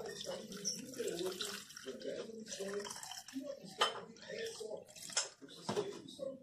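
Water pouring from a plastic bottle into a plastic shaker cup, with a few sharp knocks in the second half.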